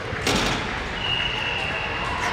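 A basketball hitting hard once, about a quarter second in, as a single sharp bang in a large gym. About a second in, a thin high squeak starts and holds steady.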